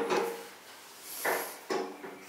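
Valve handles of an old brass clawfoot-tub faucet being turned, metal rubbing against metal in two short sounds, at the start and just past a second in. No water comes out: the tap is dry.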